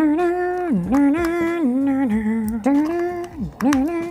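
A man humming a wordless tune: held notes that step up and down in pitch, sliding between them.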